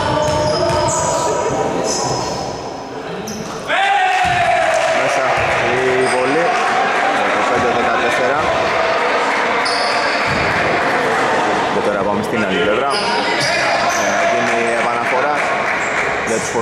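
Basketball bouncing on a hardwood gym floor during play, with background voices and short high squeaks echoing in a large hall. A sudden loud voice-like call comes in about four seconds in.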